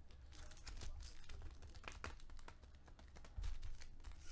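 Foil trading-card packs crinkling and rustling as a stack of them is shuffled by hand, with scattered small clicks and a low bump about three and a half seconds in.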